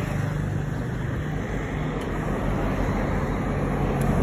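Steady low rumble of road traffic, heard muffled, with rubbing and handling noise as the phone is held against a hand.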